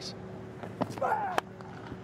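Cricket bat striking the ball with one sharp crack about one and a half seconds in, over steady stadium crowd noise with a single voice calling out just before.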